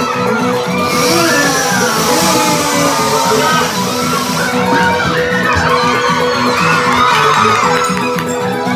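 A crowd shouting and cheering over loud background music with a repeating bass line. A louder surge of cheering rises about a second in and lasts some three seconds.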